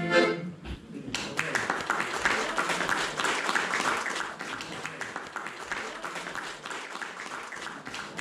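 A men's choir's final held chord breaks off right at the start. About a second later the audience applauds, a dense clapping that slowly fades.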